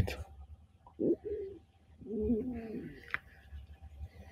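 A pigeon cooing softly twice: a short coo about a second in and a longer, wavering coo about two seconds in. A single sharp click comes just after three seconds.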